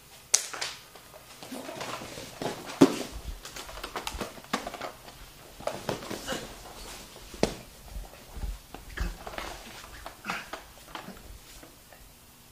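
Two people wrestling on a foam grappling mat: irregular thuds and scuffles of bodies hitting and sliding on the mat, mixed with short grunts and strained breathing.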